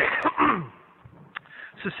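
A man coughing to clear his throat: two short, noisy bursts right at the start. Later comes a small click, and then speech begins near the end.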